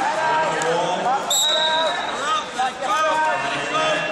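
Overlapping voices of coaches and spectators calling out in a large, echoing gym hall.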